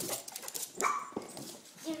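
Miniature pinscher giving one short, sharp bark about a second in, amid light scuffling and clicks as it goes after a rubber balloon.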